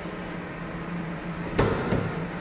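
A steady low hum with a single short clunk about one and a half seconds in.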